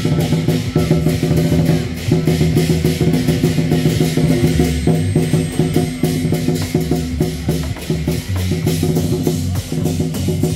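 Lion-dance percussion: drums and crashing cymbals keeping up a fast, steady beat, with low ringing tones underneath.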